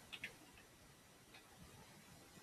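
A few faint computer keyboard keystrokes near the start, finishing a typed terminal command and pressing Enter, then near silence.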